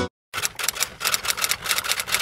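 Typewriter keys clacking in a rapid run of keystrokes, about six or seven a second, starting just after a brief silence: a typing sound effect for on-screen title text.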